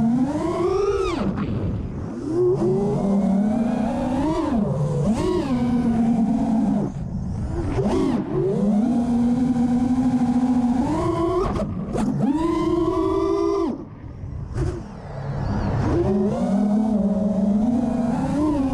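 Brushless motors of an FPV freestyle quadcopter (Cobra 2207 2450kv) whining, heard from the onboard camera, the pitch rising and falling sharply with throttle. The sound drops away briefly about 2, 7 and 14 seconds in, where the throttle is cut, then climbs back.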